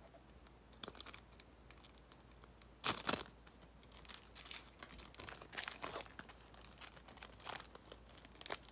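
Foil trading-card pack crinkling and tearing as it is ripped open by hand, in a run of short crackles with one louder rip about three seconds in.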